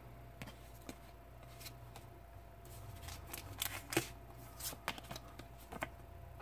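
Pokémon trading cards being handled and slid against one another: faint rustling with a few light clicks, more frequent in the second half.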